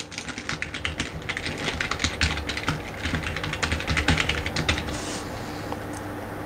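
Fast typing on a computer keyboard: a dense, irregular run of keystrokes that stops about five seconds in.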